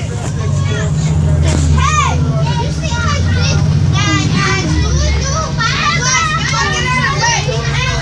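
Many children's voices chattering and squealing inside a bus, over the steady low rumble of the bus.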